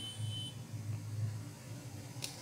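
Quiet room tone with a steady low electrical hum, and a faint thin high-pitched tone for about the first half second.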